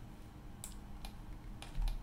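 A few sharp, separate clicks from a computer mouse and keyboard, over a faint low hum.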